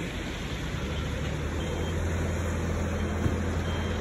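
A motor vehicle engine running nearby with a steady low hum, over general street traffic noise.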